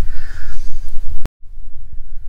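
Low, steady rumble of wind buffeting an outdoor microphone. About a second and a quarter in it is broken by a click and a split second of dead silence, as at an edit cut.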